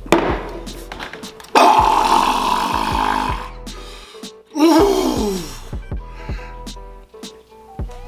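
A man groaning with his mouth open after downing a boot glass of honey-thick water: a long loud groan starting about a second and a half in, then a shorter one falling in pitch near the middle. A hip-hop beat plays underneath.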